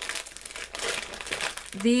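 Thin plastic packaging bags crinkling as they are handled and picked up, a dense run of small crackles.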